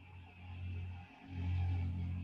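A man's low, held hum, a hesitation "mmm", sounded twice with a short break about a second in: a filler pause in the middle of his sentence.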